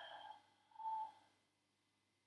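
A woman's soft audible exhale at the start as she holds a standing forward fold, followed about a second in by a brief single-pitched squeak. The rest is nearly silent.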